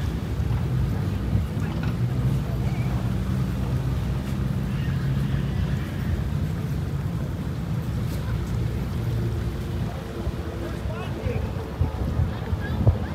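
A boat's engine running with a steady low hum.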